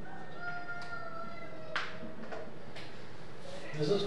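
Whiteboard marker squeaking as it writes: thin, drawn-out squeals that slide slightly in pitch, broken by a few sharp ticks of the marker tip, the sharpest about two seconds in.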